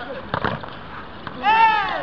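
A young player's loud, high shout near the end, drawn out and rising then falling in pitch, over open-air background voices. About half a second in there are two sharp knocks.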